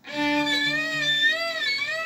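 Violin bowed softly, holding one note with a slow waver in pitch: a vibrato exercise played with the left-hand finger resting lightly on the string.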